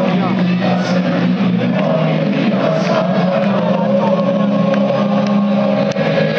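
Live band on stage holding a loud, steady droning chord with a higher note sustained above it, with no beat.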